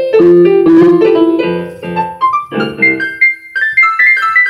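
Solo piano playing: full chords over a bass line for the first two seconds, then a rising line of higher single notes with sparser chords.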